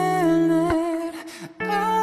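A man's voice holding a long wordless sung note that wavers in pitch, over a strummed guitar. A chord is struck about a third of the way in and a fresh one near the end, with a brief drop in loudness between them.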